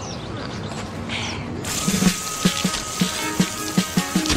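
A steady hiss of spraying water, with soundtrack music coming in suddenly about one and a half seconds in, carrying a steady beat of low thumps.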